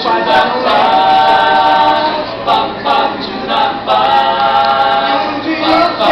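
A cappella vocal jazz ensemble singing in close harmony: long held chords about a second in and again from about four seconds, with short clipped syllables between.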